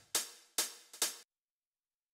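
Drum-machine closed hi-hat playing alone: three sharp, short hits about half a second apart, with a faint extra hit just ahead of the third. Playback stops about a second and a quarter in. The faint hit is a small extra hi-hat, swung and out of place, left by time-compressing the loop.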